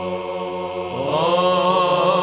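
Monks' choir singing Romanian Byzantine (psaltic) chant, with voices holding a steady drone note under the melody. About a second in, a new phrase begins, the voices sliding up in pitch into it.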